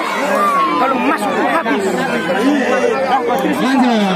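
A large crowd of spectators, many voices talking and calling out at once in a continuous loud babble.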